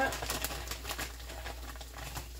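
Frozen tater tots sizzling and crackling in a hot cast iron skillet, a quick run of crackles in the first second that then thins out.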